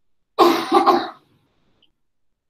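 A person clearing their throat: two short, loud bursts in quick succession, about half a second in, then quiet.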